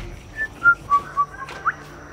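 A few short whistled notes at different pitches, the last one sliding upward.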